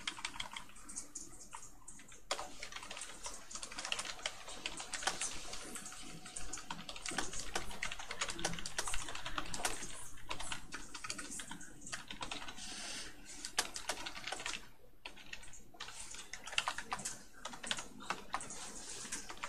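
Typing on a computer keyboard: a fast, uneven run of key clicks with a short pause about three quarters of the way through.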